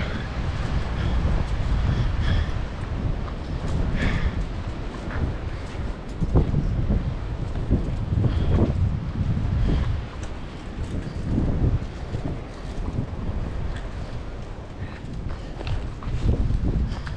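Wind buffeting the microphone as a steady low rumble, with scattered knocks and clicks.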